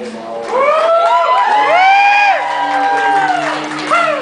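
Several men's voices singing a wordless harmony. One after another they slide up into long held notes and then fall away, over a low sustained note from the acoustic band.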